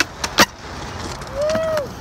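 Skateboard flip trick on concrete: two sharp clacks of the board, the second about half a second in as the skater lands, then the wheels rolling on the concrete.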